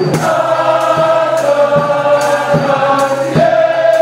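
A choir singing a long held chord in several parts, with a drum struck roughly once a second beneath it.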